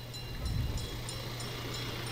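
Faint street traffic noise with a steady low hum, rising slightly about half a second in.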